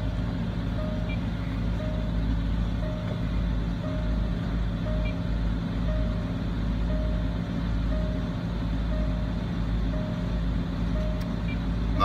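Range Rover Sport's engine idling as a steady low hum, with a single-pitch electronic beep repeating about once a second over it.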